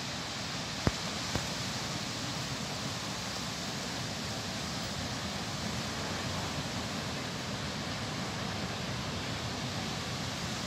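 Steady hiss of surf breaking on a sandy beach, even throughout with no single wave standing out. About a second in, two sharp clicks half a second apart; the first is the loudest sound.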